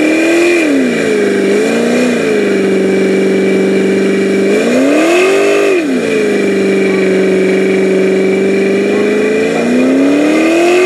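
Car engine held at steady high revs during a burnout, its pitch swooping up and back down about half a second in, around two seconds and again around five seconds in.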